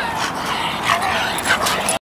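American Staffordshire terriers at rough play, giving a few short, high-pitched whines amid noisy breathing and scuffling.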